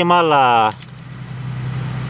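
A motor vehicle's engine: a low, steady hum that grows gradually louder through the second half.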